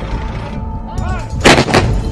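Heavy cannon fire: two loud blasts in quick succession about one and a half seconds in, over a continuous low rumble.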